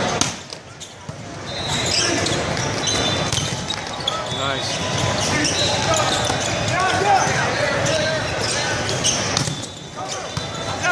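Indoor volleyball rally: sharp smacks of the ball being served, passed and hit, several times, over a steady din of voices in a large, echoing hall.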